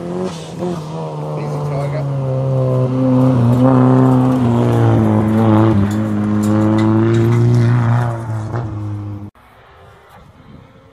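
Rally car engine at high revs on a gravel stage, growing louder as it approaches and passes, its note stepping up and down through the gear changes. The sound cuts off suddenly about nine seconds in.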